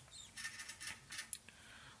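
Faint rustling and a scatter of light ticks and taps as a hand picks up a hatchling ball python from a plastic tub lined with paper towel.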